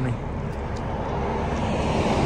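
Steady road and wind noise of a Jeep Wrangler driving at highway speed, growing louder toward the end.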